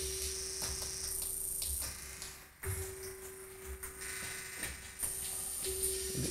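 Room tone with a steady hum that drops out briefly about two and a half seconds in, then resumes, with a few faint clicks.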